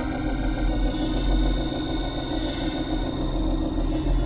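Experimental electronic synthesizer drone: a deep, steady low hum under a fast-fluttering, pulsing mid-range texture, with a thin high tone held from about a second in until near the end.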